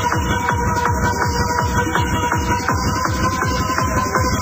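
Fast techno from a 1993 rave DJ set: a steady, rapid low beat under a held high synth tone, with regular percussion ticks on top.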